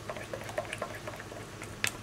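Hand utensil stirring thick wet plaster mix in a glass measuring cup: faint wet scraping with small irregular clicks, and one sharper click near the end.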